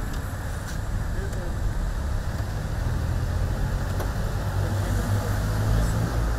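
Street traffic: a vehicle engine running close by, a low steady rumble that grows a little louder in the second half, with a few faint clicks over it.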